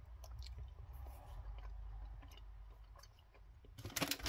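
Faint, soft chewing of a foam marshmallow sweet, with a few small mouth clicks.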